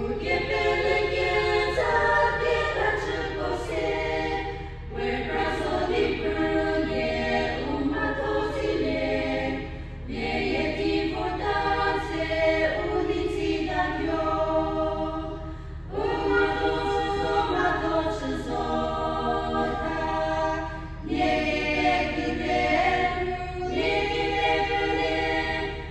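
A women's choir singing a hymn in harmony, unaccompanied. The hymn goes in phrases of about five seconds, with short breaks for breath between them.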